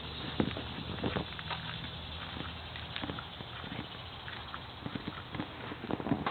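Footsteps on pavement, a string of irregular short knocks over a steady outdoor background hum.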